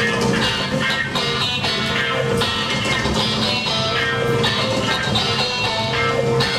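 Live rock band playing an instrumental passage on several electric guitars with drums: a dense, steady wall of guitar chords over a regular drum beat.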